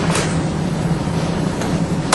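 Steady low hum with an even hiss, the background noise of a large lecture hall.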